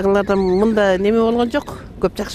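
A single long, steady call from a large farm animal at a livestock market. It ends about one and a half seconds in.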